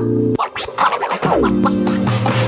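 Electronic background music with DJ-style scratching: pitched notes that sweep down in pitch, cut by sharp clicks.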